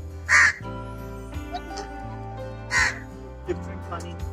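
Two short, loud bird calls, one just after the start and one about two and a half seconds later, over background music with steady held notes.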